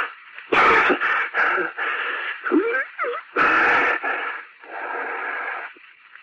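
A man's coughing fit from an old radio drama recording: harsh coughs and wheezing gasps for breath in a string of bursts, growing weaker toward the end. It is a sick man's attack of coughing, heavy enough to bring on his collapse.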